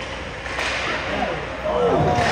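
A single sharp crack from the hockey play on the ice about half a second in, then voices shouting in the rink, growing louder near the end.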